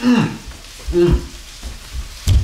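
A man's voice making two short wordless sounds, a falling one at the start and a brief held one about a second in, over a steady hiss.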